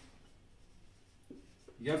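Marker pen writing on a whiteboard: faint strokes, with a couple of small taps in the second half as digits are written.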